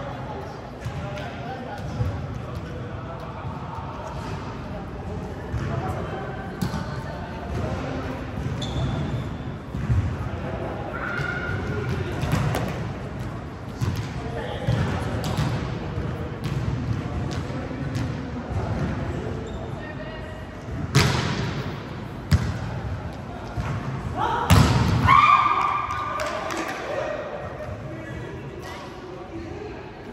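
Volleyball rally on a gym court: scattered sharp smacks of hands and forearms hitting the ball and thuds of the ball on the hardwood floor, the loudest two hits about two-thirds of the way through. Players' voices call out between hits, carried by the hall's echo.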